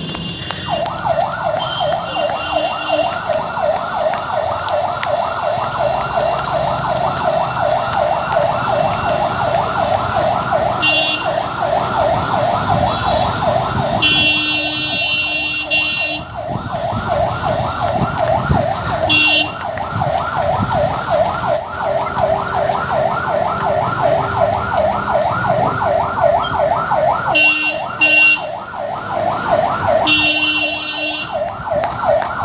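Ambulance siren sounding a fast yelp, a rising wail that repeats about four times a second without a break. A few short, higher-pitched blasts sound over it around the middle and again near the end.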